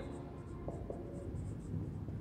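Marker pen writing on a whiteboard: faint scratching and small taps of the felt tip as a word is written.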